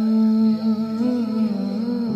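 Background music carried by a voice humming a sustained melody note, held steady and then bending gently in pitch about a second in.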